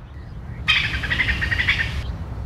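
A bird calling in a quick run of chirps that starts abruptly under a second in and is cut off suddenly at the end, over a steady low rumble.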